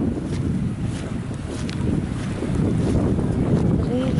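Wind buffeting the microphone: a loud, low, uneven rumble that sags slightly about a second in and builds again.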